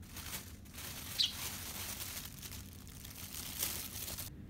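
A fledgling Eurasian tree sparrow gives one short, high chirp about a second in, over a steady rustling hiss.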